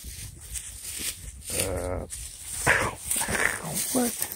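Airedale terrier vocalizing: a low, drawn-out sound about halfway through, then a couple of higher, wavering cries near the end.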